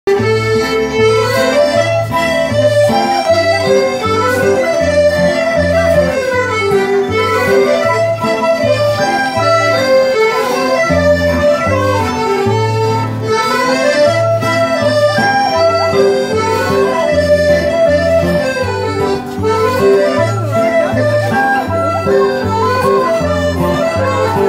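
Live folk band playing an An Dro, a Breton line-dance tune: a repeating, rising-and-falling melody over a steady, even bass pulse.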